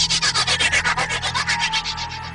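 TV-serial dramatic reaction sound effect: a fast, even run of swishing noise strokes, about ten a second, over a low steady drone, dying away near the end.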